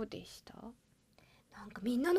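Only speech: women's voices, soft and whispered at first, then about a second of silence before a woman starts talking again near the end.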